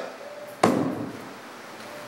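A single sharp knock about half a second in, with a brief ringing tail, like something hard set down or struck.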